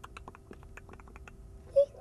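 A quick, irregular run of tongue clicks made with the mouth, several a second, ending near the end in one short, loud vocal squeak.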